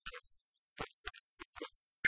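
Badly damaged film-song soundtrack: the music comes through only as short, faint, scratchy bursts, about three a second, cut apart by dead silence.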